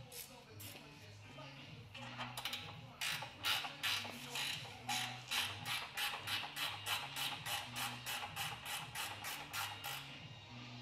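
Hand ratchet wrench clicking in a steady run, about three to four clicks a second starting about three seconds in, as bolts holding the old front-mount intercooler are undone.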